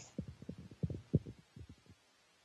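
A run of faint, irregular low thumps, about a dozen in under two seconds.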